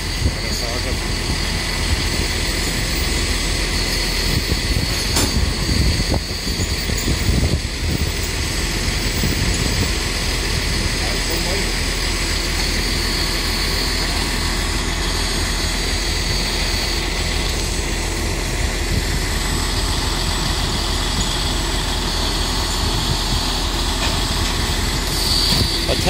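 Heavy diesel truck engine idling steadily, most likely the recovery low-loader's tractor unit, with a constant low hum.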